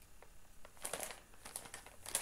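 Plastic mailing bag crinkling as it is handled, in two short spells of rustling about a second in and again shortly after.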